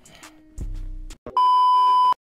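Background hip-hop beat with a deep bass hit about half a second in, then cut off by a loud, steady, high electronic test-tone beep of the kind played over TV colour bars. The beep starts a little past the middle and stops suddenly.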